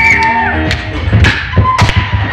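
Recorded pop song playing over a PA: a held sung note and its backing stop about half a second in, followed by three sharp knocks.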